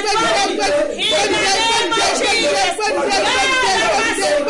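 A woman's voice speaking rapidly and without pause, in fervent prayer.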